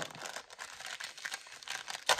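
Clear cellophane packet crinkling and crackling as it is handled and pulled open by hand, a dense run of fine crackles a little louder in the first second.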